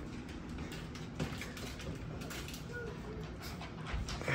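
Faint light clicks and scuffling of a young puppy's paws and claws on a wooden surface as it is handled, with one faint short squeak near the end.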